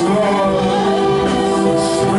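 Church worship music with singing, holding one long note.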